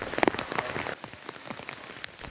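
Heavy rain falling on floodwater, a dense patter of drops that is louder in the first second and then eases.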